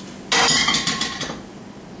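Egg flipped in a hot frying skillet: a sudden burst of sizzle with pan clatter about a third of a second in, fading away over about a second.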